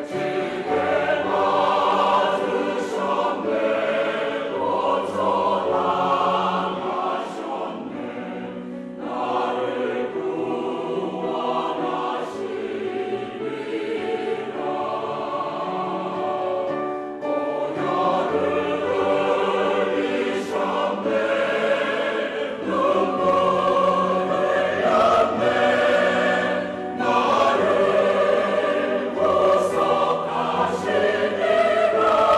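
Church choir singing a sacred choral anthem with a male soloist, in continuous phrases with brief breaths between them.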